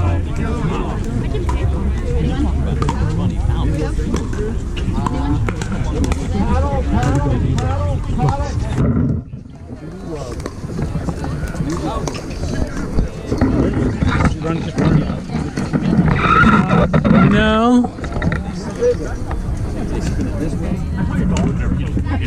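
Indistinct voices of people talking close by, over a steady low rumble of wind on the microphone, with scattered sharp pops of pickleball paddles hitting the ball. The sound dips briefly near the middle.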